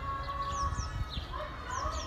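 Birds calling: short, high, descending chirps in two quick pairs, about half a second in and again near the end, over a held, lower-pitched call early on and a short rising call after the middle.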